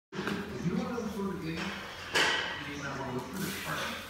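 People talking in a gym, with one sharp clank about two seconds in, the loudest sound here, fitting the plates of a heavily loaded barbell as a lifter walks out a squat.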